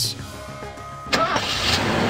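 A car engine starting about a second in and settling into a steady run, over soft background music.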